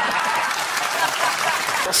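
Studio audience applauding steadily, with some laughter mixed in, in response to a joke's punchline.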